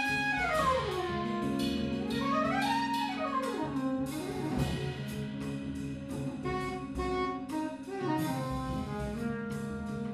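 Soprano saxophone soloing in a live jazz group, sweeping up and down in fast runs in the first few seconds, then playing shorter held notes, over double bass, electric guitar and drums.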